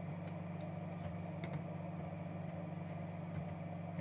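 Steady low hum of room tone, with a few faint clicks of cards and plastic card holders being handled.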